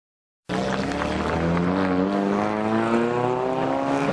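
A Ferrari sports car's engine running, starting about half a second in, its pitch climbing slowly and steadily.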